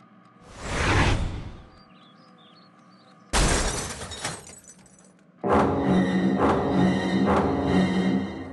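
Cartoon sound effects of a thrown plate: a whoosh that swells and fades about a second in, then a sudden crash of breaking crockery at about three seconds that rings and dies away. Dramatic music starts about five and a half seconds in.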